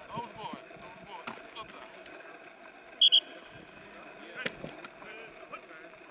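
Two short, loud blasts of a whistle about three seconds in, over scattered shouting of players, with a sharp knock a little after.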